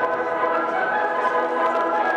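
A steady, sustained sound of several level pitches at once, lasting about three seconds, that comes in just as the starting stalls open: the start signal for a horse race.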